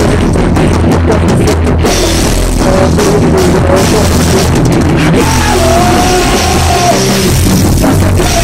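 A rock band playing loud: a drum kit with cymbals driving under electric guitar and bass. From about five seconds in, long held notes ring out over the drums.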